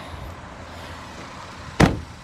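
A car door slamming shut once near the end, a single sharp bang, over a steady low rumble.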